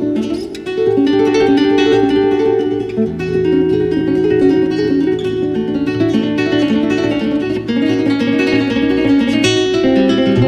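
Nylon-string classical guitar played fingerstyle: a quick run of plucked notes, with a low bass note held under them from about three seconds in.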